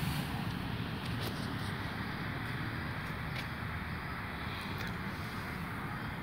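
Steady low outdoor background noise, a rumble with a fainter hiss above it and a few faint ticks.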